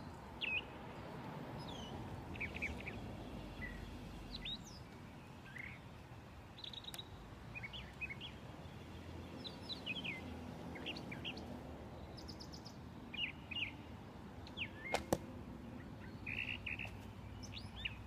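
Small birds chirping on and off over a low steady background hum. About fifteen seconds in, a single sharp crack of a recurve bow being shot.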